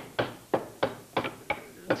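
Rhythmic knocking: sharp knocks repeating about three times a second, each dying away quickly.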